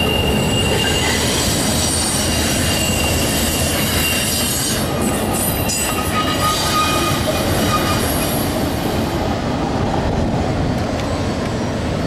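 Autorack freight cars of a CN train rolling past with steady wheel and rail noise. Faint thin wheel squeals come and go over it.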